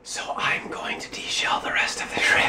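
A person whispering.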